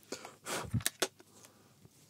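Close-miked handling of a Canon 40D DSLR body while dust is picked out of it by hand: a brief rubbing hiss, a dull knock, then two sharp clicks about a second in.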